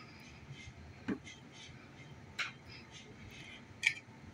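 Three faint, short clicks spread through a quiet stretch: a serving spoon touching the plate as diced peppers are spooned onto an omelette.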